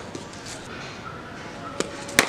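A single sharp knock near the end, from cricket sweep-shot practice in the nets: a cricket ball landing on the concrete pitch or meeting the bat, over faint background voices.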